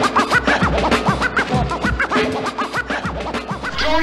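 Hip hop beat with turntable scratching: short back-and-forth record scratches sweeping up and down in pitch over steady drums. The music dips a little in loudness near the end.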